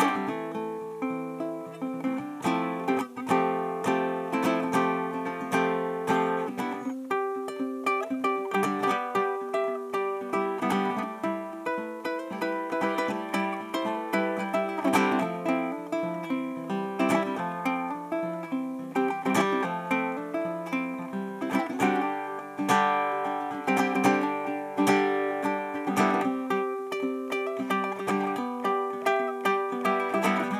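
A solo nylon-strung handmade ukulele with a side sound port, played fingerstyle: a continuous melody of plucked notes and chords, several notes a second.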